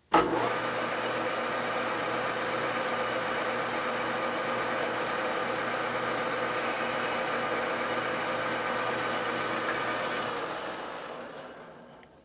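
Metal lathe running at a steady speed while a cutting tool cleans up the shoulder of a turned part. About ten seconds in the machine is shut off and winds down, fading out.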